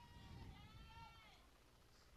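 A faint, distant voice calling out in one drawn-out call that rises and falls in pitch, like a shout from the dugout or stands, over quiet ballpark background.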